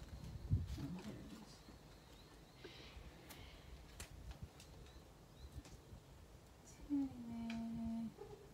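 Quiet handling of a ring-binder budget wallet and paper: scattered soft clicks and rustles, with a low thump about half a second in. Near the end, a pitched sound drops slightly and is held for about a second.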